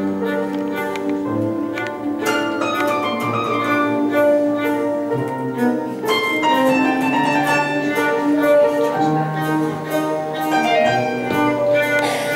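Bayan button accordions and a bowed cello playing together in an ensemble, with sustained chords under a moving line of notes.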